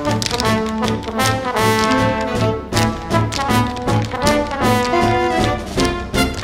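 Brass-led swing band music, trombones and trumpets playing over a steady bass beat about two to the second.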